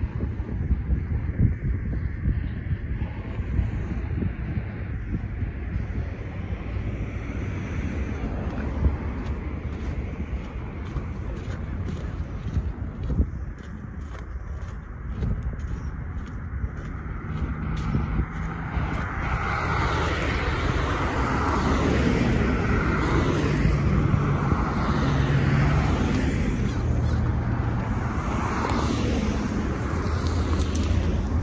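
Road traffic passing close by on a bridge: cars and pickup trucks driving past, the tyre and engine noise growing louder in the second half as vehicles go by one after another. In the first half a steady low rumble, wind on the microphone and distant traffic, dominates.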